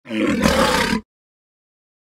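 A loud, rough, roar-like intro sound effect lasting about a second, cutting off suddenly.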